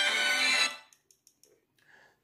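Music played through a Samsung Galaxy A70's loudspeaker from the phone's speaker test, cutting off abruptly under a second in, followed by near silence. The speaker sounds clear, no longer crackling and distorted as it did before the repair.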